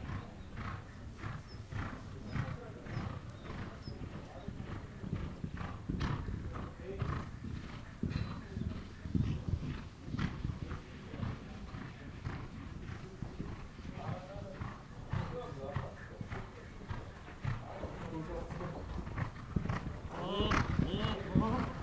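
A horse cantering on sand arena footing in a show-jumping round: a steady run of hoofbeats.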